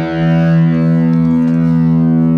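Electric guitar chord struck right at the start and left to ring on steadily through the amplifier, with no further strumming.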